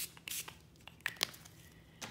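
A short hiss of a pump spray bottle spritzing once, then a few light clicks and rustles of handling about a second in.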